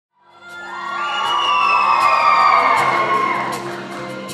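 Audience cheering and whooping with high voices, swelling to a peak midway and then easing, over the sustained held tones of the song's instrumental intro.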